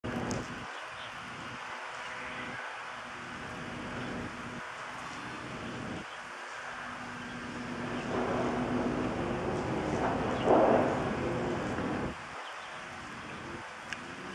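Road traffic rumbling steadily, swelling as a vehicle passes and loudest about ten seconds in, then falling away about two seconds later.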